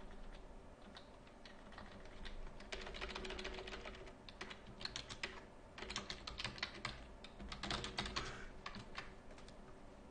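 Typing on a computer keyboard: runs of rapid keystrokes, each lasting about a second, with short pauses between them.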